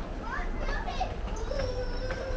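Background voices, high-pitched children's voices calling out in short rising and falling bursts.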